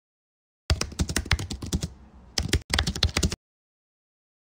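Typing on a computer keyboard: a fast run of keystrokes starting under a second in, a short pause, then a second quick run that stops well before the end.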